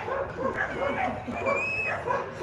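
A small dog whining and yipping in a run of short, high calls, with a thin drawn-out whine about one and a half seconds in.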